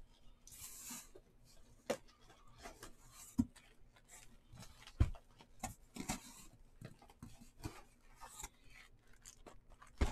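Cardboard trading-card boxes being handled and set down on a table: scattered knocks and taps, with short rustles in between.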